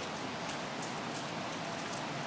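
A steady, even hiss with faint light ticks and no voices.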